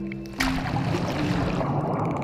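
Background music with sustained low notes, joined about half a second in by a steady rush of churning water and bubbles as the shot breaks the sea surface and goes under.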